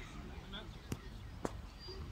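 Voices of players talking and calling across an open football pitch, heard at a distance, with two short knocks about a second in and again half a second later.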